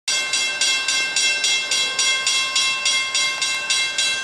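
Railroad grade-crossing warning bell ringing steadily, about three and a half strokes a second, while the crossing signals are activated.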